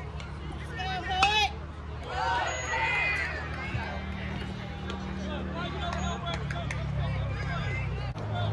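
A single sharp crack of an aluminum baseball bat hitting the ball about a second in, followed by spectators shouting and cheering as the batter runs.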